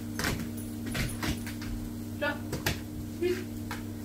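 A dog's claws and paws tapping and knocking on a tiled floor as it jumps up and lands during tricks: a scatter of sharp clicks, with one short high-pitched vocal sound a little over two seconds in.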